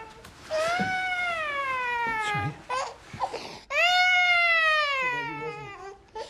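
Baby crying hard: two long, drawn-out wails, each rising and then falling away, with short broken sobs between them.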